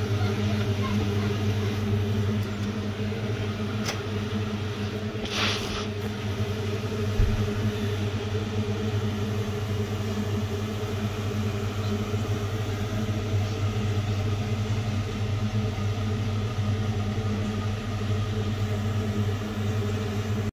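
Electric oven's fan and element running with the door open, a steady low hum. A single click about four seconds in and a brief rush of noise a second later.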